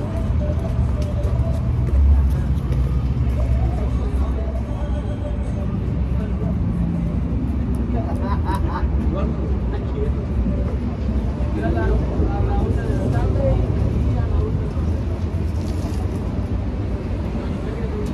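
A steady low rumble, with voices faintly heard a few times in the background.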